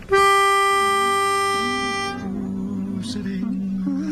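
Barbershop pitch pipe blown once: a single steady reedy note held for about two seconds. After it, the quartet softly hums their starting notes off it.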